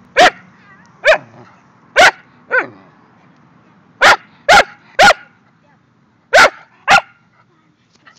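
Large black curly-coated dog barking at close range: nine short, loud barks at irregular intervals, several in quick pairs, each with a brief rise and fall in pitch.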